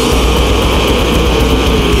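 Brutal death metal recording: a dense, steady wall of heavily distorted guitars and drums with a heavy, continuous low end.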